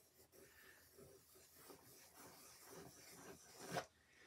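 Faint scratching of a wooden skewer drawn through wet acrylic paint on a canvas, with a short louder sound just before the end.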